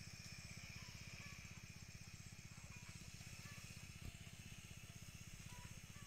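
Faint small engine running steadily with a rapid, even low pulse. There is one soft thump about four seconds in.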